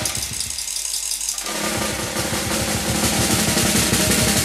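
Instrumental stretch of an early-1970s British prog-folk rock track. For about a second and a half only thin, high percussion carries on, then the drums and bass come back in with a fast, even pulse.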